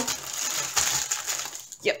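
Plastic packaging crinkling and rustling as a diamond painting canvas under its clear plastic cover is handled and put away, dying down near the end.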